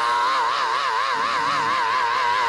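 A man's voice holding one long, high sung note with an even vibrato, the chanted close of a 'whooped' Black Baptist sermon.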